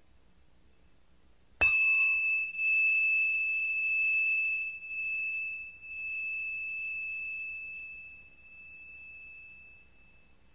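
A small bell struck once about one and a half seconds in, ringing with a single clear high tone that pulses in loudness as it slowly dies away over about eight seconds.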